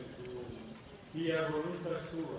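Voices reciting a rosary prayer aloud in slow, even phrases. A softer stretch in the first second is followed by a louder phrase from just after a second in.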